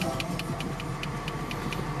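Mercedes-Benz S280 (W140) straight-six idling, heard from inside the cabin as a steady low hum. Over it runs an even, light ticking of about six ticks a second.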